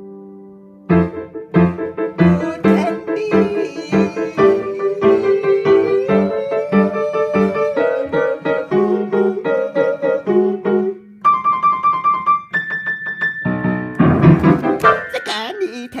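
Yamaha grand piano being played: a held chord fades away, then struck chords and melody notes come in about a second in and go on in a steady rhythm, with a brief break about two-thirds of the way through.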